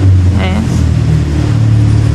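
A steady low rumble of a vehicle engine running, with a brief voice about half a second in.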